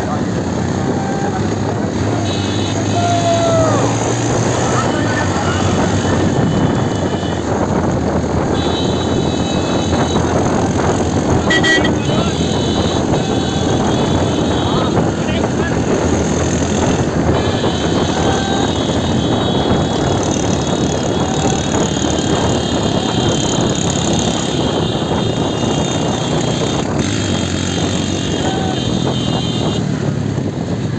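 Motorcycles running close by at low speed, heard from a moving motorcycle as a steady, loud rush of engine and road noise, with people shouting now and then.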